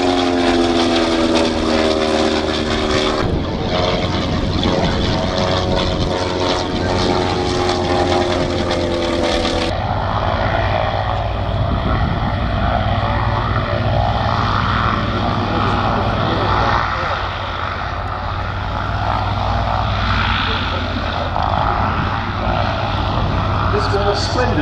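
Sopwith Triplane's rotary engine droning as it flies past, its pitch falling slightly, with an edit break at about three seconds. About ten seconds in, the sound cuts to a Sopwith Pup landing and rolling out on grass, its engine a low, steady hum under wind-like noise.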